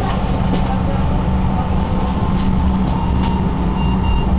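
Tram running, heard from inside the passenger cabin: a steady low rumble with a constant hum.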